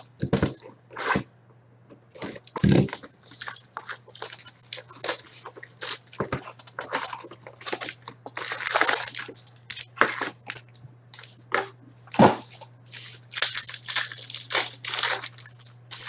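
Foil trading-card packs crinkling and being torn open, with a cardboard card box handled and cards sliding, as irregular rustles with a few sharp clicks. A low steady hum runs underneath.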